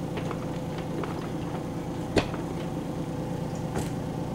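A single sharp click about two seconds in as the grow light's power is connected and the light comes on, followed by a fainter click near the end. A steady low hum lies underneath.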